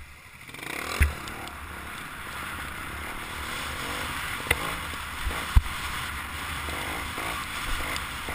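Trials motorcycle engine pulling away about half a second in and running steadily as it climbs over rough rocky ground. Sharp knocks from the wheels and suspension striking stones come about a second in and twice near the middle.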